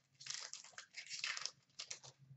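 Hockey trading cards being handled and slid against one another in the hand: three short, papery rustles.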